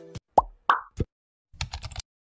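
Animation sound effects: a few quick cartoon-style pops in the first second, then a rapid run of keyboard-typing clicks near the end as text is typed into a search bar.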